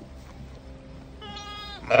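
Newborn North Country Cheviot lamb bleating once: a thin, high call of about half a second, about a second in, that drops in pitch as it ends. A loud laugh breaks in just as it stops.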